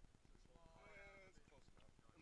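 A faint, drawn-out human voice calling out for about a second, its pitch wavering, over a low rumble.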